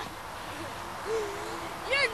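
A brief, steady, low 'hoo' from a person's voice about halfway through, over a steady hiss; a voice begins speaking right at the end.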